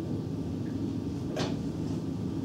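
Steady low rumble of classroom room noise, with one short scrape or knock about one and a half seconds in.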